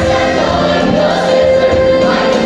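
A musical-theatre cast singing together in full chorus over a pit orchestra, with one long held note.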